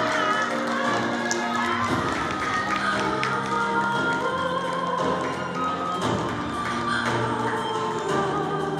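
Background music with long held notes moving slowly from pitch to pitch.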